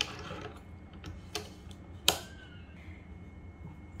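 A few light plastic clicks from a Cricut Joy's tool carriage as the blade housing is handled in its clamp, the sharpest about two seconds in.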